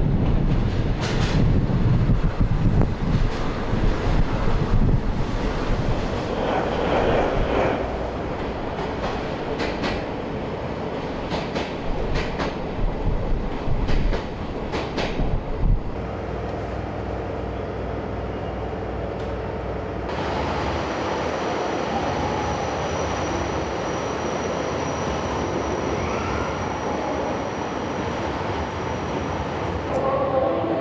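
Twilight Express sleeper train hauled by a blue diesel locomotive, running past with a heavy low engine rumble and a run of sharp wheel clicks over rail joints for the first fifteen seconds or so. After about twenty seconds it gives way to the steady running noise of the train heard from inside a car, with a faint high whine.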